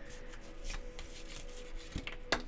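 A deck of oracle cards being shuffled by hand: a soft papery rustle with a few faint clicks.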